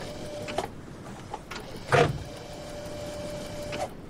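Hydraulic pot hauler straining against a plastic lobster-pot rope that holds without breaking, a steady whine, with a brief loud knock about two seconds in.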